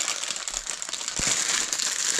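Clear plastic packaging bag crinkling and rustling continuously as it is handled to be unpacked, with small crackles throughout.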